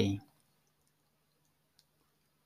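A man's voice ending a sentence, then near silence broken by a few faint computer-mouse clicks, one clearer near the end.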